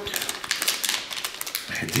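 Clear plastic parts bag crinkling and rustling as it is handled, a quick irregular run of crackles and clicks.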